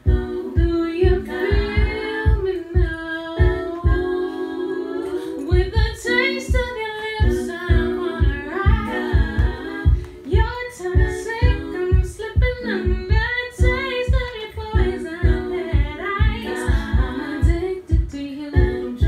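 A woman singing a cappella in a live performance: a lead melody that bends and moves over held lower vocal harmonies and a steady low beat.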